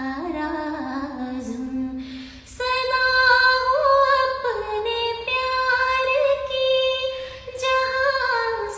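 A woman singing solo in sustained, ornamented notes: a lower phrase that slides slowly downward, a short breath, then a louder phrase pitched about an octave higher from about two and a half seconds in.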